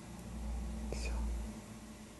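Quiet room with a low rumble and a faint breathy hiss about a second in.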